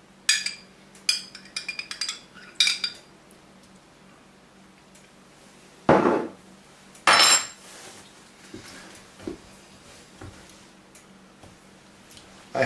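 A metal utensil clinking against glass as jalapeno peppers are taken from a jar into a glass blender jar: a quick run of light, ringing clinks in the first three seconds, then a dull knock about six seconds in and a brighter clatter a second later.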